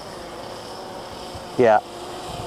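Faint, steady buzz of a Blade 350 QX quadcopter's electric motors and propellers as it flies overhead, with one short spoken word near the end.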